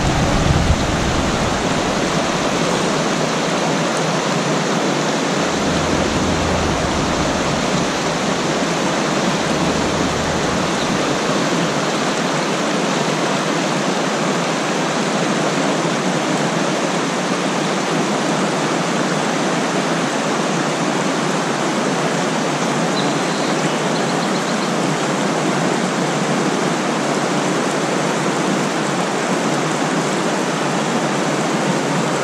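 Truckee River water rushing over boulders in shallow rapids: a steady, even whitewater rush that holds at one level throughout.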